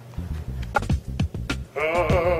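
Beatboxing: a quick run of mouth-made kick and snare beats with sharp clicks. Near the end a voice comes in, holding a long sung note with a wavering vibrato.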